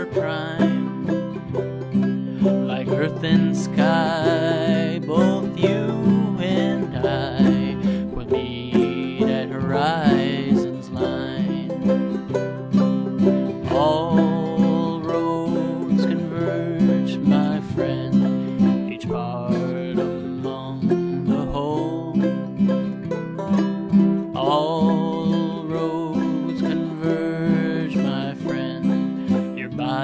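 Instrumental break of plucked banjo, ukulele and guitar playing a steady picked pattern in a country/bluegrass style, with no singing.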